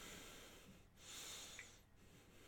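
Faint breathing close to the microphone: two soft breaths through the nose, one at the start and one past the middle.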